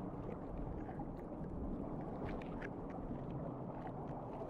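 Humphead parrotfish biting coral and rock: faint scattered clicks and crunches over a steady low underwater rumble.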